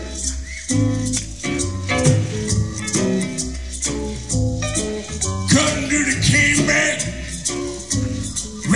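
Live band playing the instrumental opening of a song, with bass notes moving in steps and percussion keeping regular time. A brighter, busier layer comes in about five and a half seconds in.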